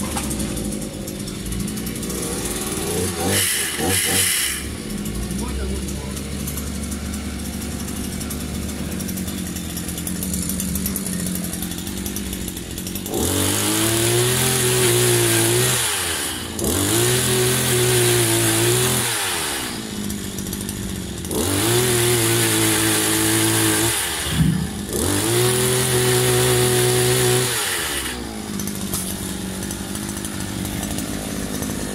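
Small petrol engine of a multi-tool pole chainsaw idling, then revved up four times for about three seconds each and let fall back to idle. The saw is being run to test whether it works again after its loose drive shaft was pushed back in.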